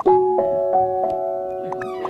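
Background music of soft electric-piano chords, the chord changing several times. A brief rising glide near the end.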